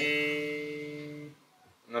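A chord plucked at once on a four-string electric bass, fingered as a barre across two strings. It rings and fades for just over a second, then is cut off.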